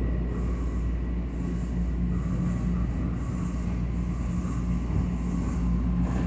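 Steady low rumble inside a passenger train car as the train runs, with a faint high whine coming in about two seconds in.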